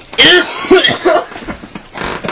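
Several harsh, raspy vocal outbursts from a young man in quick succession in the first second, cough-like at the start, then quieter.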